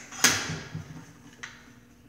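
A sharp click from handling an unplugged circular saw as it is turned over for a blade inspection, followed by a much fainter click about a second later.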